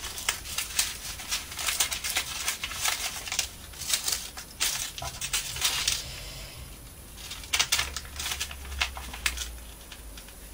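Hands folding and pressing glue-soaked paper on a cutting mat: irregular crinkling of paper and sheet with light taps and clicks, busiest around the middle and again near the end.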